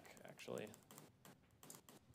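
Several faint, quick clicks of a handheld presentation remote's button, pressed repeatedly to step a slide show back several slides.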